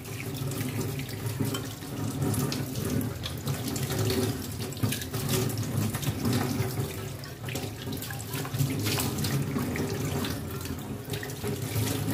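Kitchen tap running onto an aluminium pot being rinsed in a sink, the water splashing off the metal as the pot is turned by hand, with scattered light clicks and knocks of the pot being handled.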